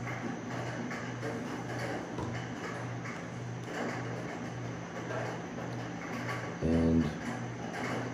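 Steady patter of rain on a tin roof, with a low hum pulsing about twice a second underneath. A brief low voiced sound comes near the end.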